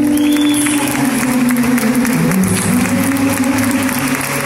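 Live band playing a samba with strummed acoustic guitar, with audience applause and crowd noise over the music.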